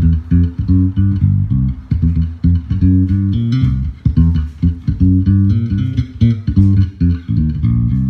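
Sire M7 five-string electric bass, pickups in single-coil mode, played through a Genz Benz Shuttle 9.0 amp and Schroeder 1210 cabinet: a quick bass line of many short notes that stops right at the end.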